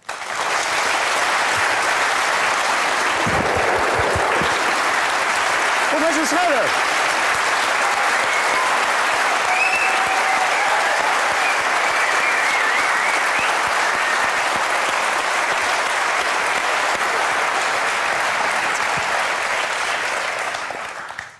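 Studio audience applauding: dense, even clapping that starts suddenly and stays steady, with a few voices calling out over it.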